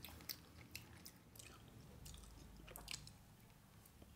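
Faint chewing of a mouthful of soft food (rice and curry) with the mouth closed, with small mouth clicks scattered through it.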